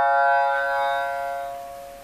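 A plucked shamisen note ringing on and slowly fading away.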